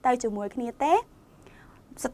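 Speech only: a woman's voice talking for about a second, then a short pause.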